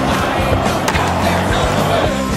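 Skateboard grinding along a metal flat rail, a long scraping slide with a sharp clack a little under a second in, over background music.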